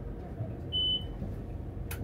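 A single short, high electronic beep inside a stationary tram, over the vehicle's steady low hum, with a sharp click near the end.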